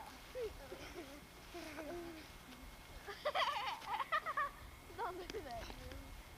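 Boys' voices without clear words as they play-wrestle. From about three seconds in there is a louder stretch of high-pitched, wavering cries lasting about a second and a half.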